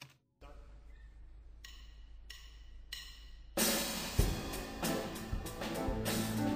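Opening of a live band recording played back: low background noise with a steady low hum, then three drumstick clicks counting in about two-thirds of a second apart, and about three and a half seconds in the band comes in loud with drum kit and cymbals.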